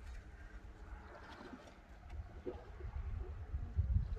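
A bird calling faintly a few times, over a steady low rumble of wind on the microphone.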